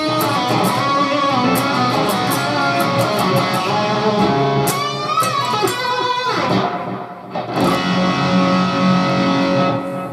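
Ibanez S561 electric guitar played through an amp, roughly abused with string bends and pitch glides in the middle, then a chord struck and left ringing over the last couple of seconds to check that the tuning holds; it stays in tune well enough to be called pretty good.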